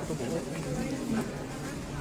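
Indistinct chatter: several people talking at once, with no single clear voice.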